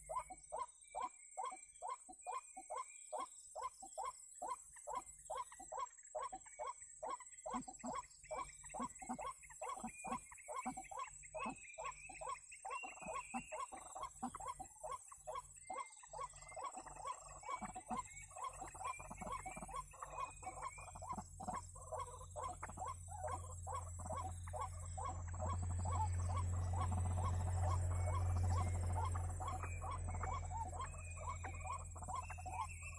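White-breasted waterhen (ruak-ruak) calling, a fast run of short croaking notes about three a second that keeps going and grows denser in the second half. A low rumble swells in under it, loudest near the end.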